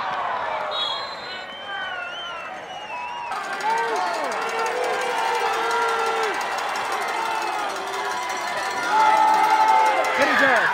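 Football crowd yelling and cheering, many voices overlapping with no clear words, rising to a louder stretch near the end.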